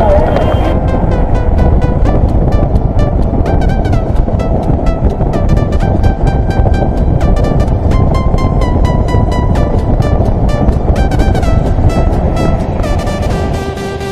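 Background music with a steady beat over the rumble of a motorcycle and wind noise while riding.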